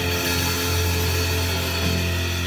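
A band holds one sustained chord, with a strong bass note under it and a cymbal wash ringing above; no drums are struck.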